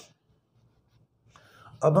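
Near silence, then a faint rustle of a hand and pen moving over paper about a second and a half in, just before a man's voice starts near the end.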